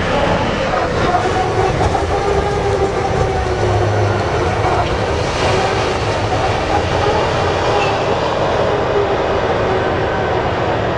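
Large mining haul truck running under load as it climbs a haul road: a steady, loud engine drone with a held whine over a low rumble.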